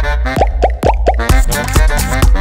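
Electronic dance track in a short break: the high end drops away and four quick falling-pitch electronic hits sound over the bass, then the full beat with its heavy kick drum comes back in a little past halfway.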